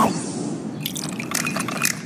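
Liquid splashing and dripping as a drink is poured, with a quick run of sharp clicks in the second half.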